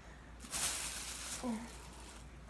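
A hissing or rustling noise lasting about a second, starting about half a second in, followed by a brief voiced sound.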